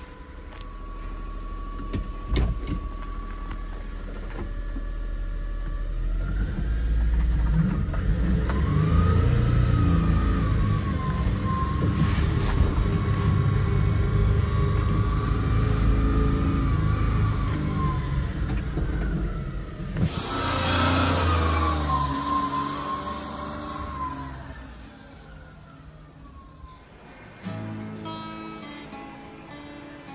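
1993 Suzuki Carry kei truck's small three-cylinder engine pulling away and driving, its pitch rising and falling as it revs through the gears of the four-speed manual, heard from inside the cab. Near the end, acoustic guitar music starts.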